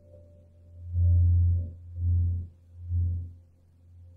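Ambient meditation music of singing-bowl-like tones: a deep drone that swells and fades about once a second, with faint steady higher tones held above it.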